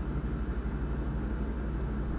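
A steady low hum with faint background noise: room tone in a hall, with no speech.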